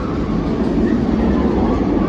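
Batman: The Ride inverted roller coaster train running on its steel track, a rumble that grows louder as the train approaches.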